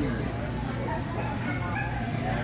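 A dog barking a few short times in the second half, over a steady low hum.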